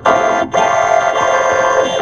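Cartoon soundtrack audio run through a vocoder-style effects chain, turned into a loud, dense, buzzing synthesizer-like chord with a brief drop-out about half a second in.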